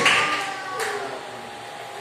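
The last spoken word rings out and dies away in a large, echoing hall. A faint steady hiss of room noise follows, with no speech.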